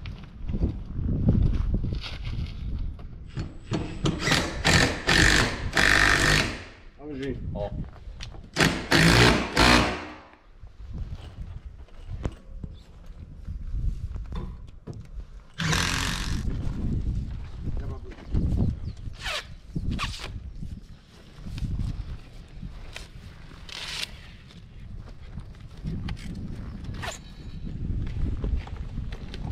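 Door-installation work: two long loud bursts of tool noise in the first ten seconds, a shorter one later, and scattered sharp knocks, with wind rumbling on the microphone throughout.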